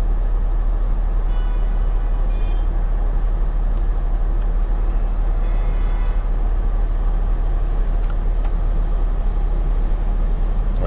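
Steady low rumble of a car idling in stopped traffic, heard from inside the cabin. Faint, brief high tones come through twice.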